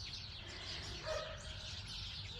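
Faint outdoor ambience of distant birds chirping, with one short, low call about a second in.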